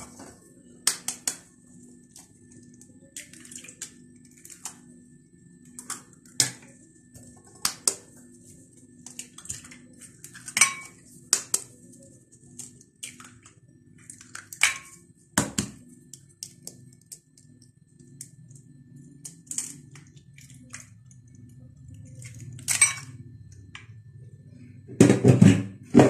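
Eggs being tapped and cracked into a glass blender jar one after another: a string of sharp, irregular clicks and taps of shell on glass, over a steady low hum. There is a louder knock near the end.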